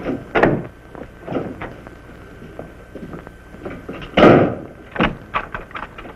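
Footsteps knocking on a wooden floor, with a wooden door shut about four seconds in, the loudest sound here. A few quicker steps follow near the end.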